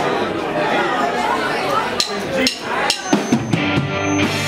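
Live rock band on amplified electric guitars and drum kit: ringing guitars first, then from about halfway a run of separate drum hits as the song gets going.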